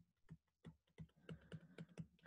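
Faint tapping of a stylus on a tablet screen as digits are handwritten: a run of light clicks, about three or four a second.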